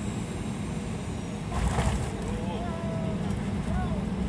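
Airliner cabin noise during the landing roll: a steady low rumble of engines and wheels on the runway, swelling briefly about a second and a half in. A few faint short squeaks sound in the second half.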